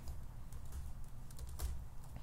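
Typing on a computer keyboard: a few quiet, irregularly spaced keystrokes.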